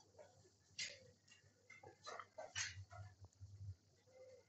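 Near silence: room tone with a few faint, brief noises scattered through it.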